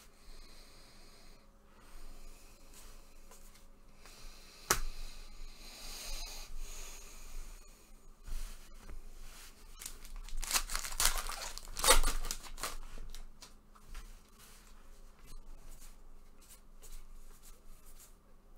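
A baseball card pack wrapper being torn open by hand, with the loudest ripping about ten to twelve seconds in. Light rustling of wrapper and cards fills the rest, with one sharp click about five seconds in.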